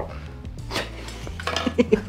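A few light clinks and knocks, like glass or hard objects being handled, over a low, steady background music bed, with brief voices near the end.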